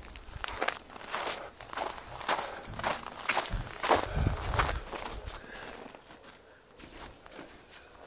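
Footsteps crunching on icy snow, uneven, about two to three a second, fading out a little past halfway.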